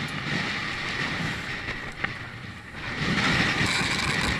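Wind buffeting the microphone of a bike-mounted action camera while riding, over a low road rumble; it grows louder about three seconds in, with a single short click about two seconds in.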